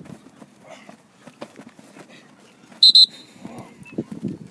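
A coach's whistle blown in two short, shrill blasts about three seconds in, over faint shuffling and thuds of players' feet on grass.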